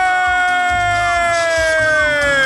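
A woman's voice holding one long, high celebratory cry, steady and then starting to slide down near the end, over crowd noise.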